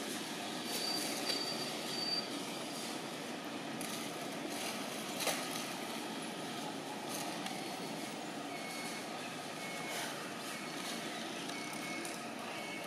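Steady outdoor background noise, with short high peeps in the first two seconds and again in the last few seconds, and a single sharp click about five seconds in.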